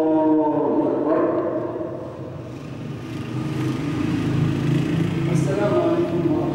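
A man's voice chanting the words of a funeral prayer in long, held notes that bend slowly downward: once at the start, again about a second in, and once more near the end, with a low hum in the pause between.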